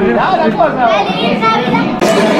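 A family's voices, children's among them, shouting and calling out over one another in excitement.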